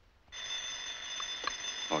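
Telephone bell starts ringing about a third of a second in, a continuous steady electric ring that carries on without a break.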